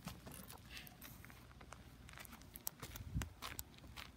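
Faint scraping and scattered small clicks of a Doberman pawing at dry, stony dirt, with a soft low thump about three seconds in.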